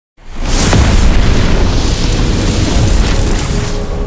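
Fiery explosion sound effect for an animated logo reveal: a sudden loud burst from silence a moment in, then a sustained deep rumble with hiss on top that eases slightly toward the end.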